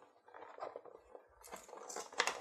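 Faint rustling and scraping of a cardboard deck box handled and turned over in the hands, growing louder and crisper about one and a half seconds in.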